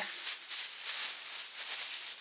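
A clear plastic sandwich bag rustling unevenly as it is wafted through the air to fill it with air.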